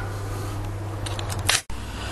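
A few light clicks over a steady low hum, then a sharper click about a second and a half in, followed by a brief drop-out where the recording cuts.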